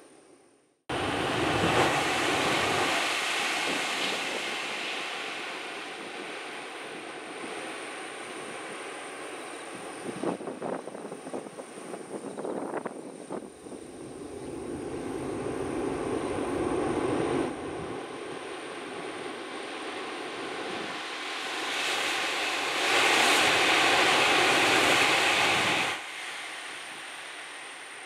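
Rushing roar of a Shinkansen high-speed train running out of sight. It starts abruptly about a second in, swells and fades in waves, and is loudest a few seconds before the end, where it drops off suddenly.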